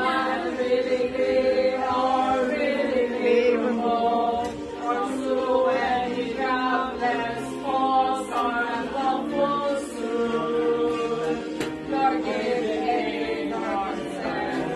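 Voices singing together into a handheld karaoke microphone, with long held notes.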